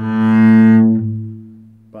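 A single bowed note on a double bass, the A, held loud for about a second and then left to ring and fade. Played in tune, it sets the open A string ringing along with it.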